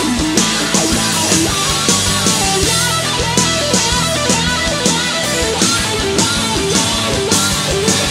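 Live rock band playing an instrumental passage: a full drum kit with Paiste cymbals keeps a steady, driving beat of kick, snare and crashes under bending electric guitar lines.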